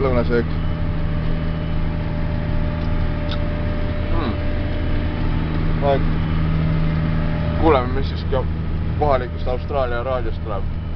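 Steady low drone of a large tractor's engine heard from inside the cab, with intermittent talk over it, most of it in the second half.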